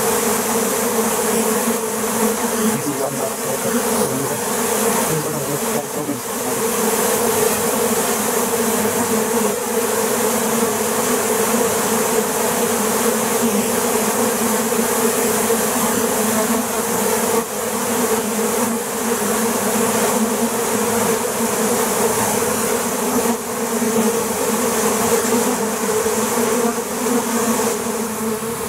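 A large swarm of honeybees buzzing in one steady, unbroken hum as the bees mass over and around a wooden hive box.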